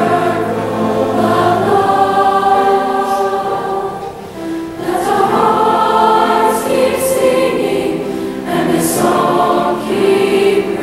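Large combined mixed choir of women's and men's voices singing sustained harmony, dipping briefly about four seconds in before the voices swell again.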